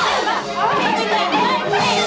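Several voices talking over one another, no clear words, with music playing underneath.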